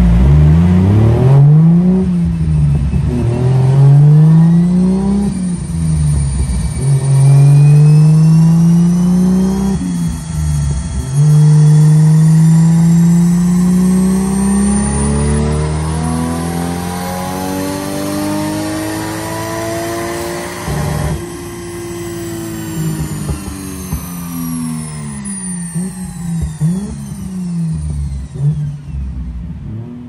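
Toyota 1JZ-GTE VVT-i 2.5-litre turbocharged straight-six on a chassis dyno. It revs up and down a few times in quick succession, then makes a long pull with the pitch climbing steadily and a faint high whine rising above it. About two-thirds of the way through the pull is cut off suddenly, and the engine note and whine wind down slowly, with a few short revs near the end.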